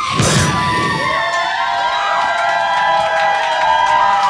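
A final crash on the drum kit just after the start, then a crowd cheering and whooping.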